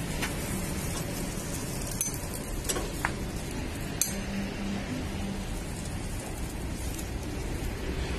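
A few sharp metallic clinks of a spatula and skewer striking a large flat iron griddle, the sharpest about four seconds in, over a steady background rumble.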